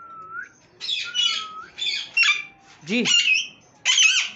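Caged pet parrots squawking: about four short, harsh, high-pitched calls spread through the few seconds.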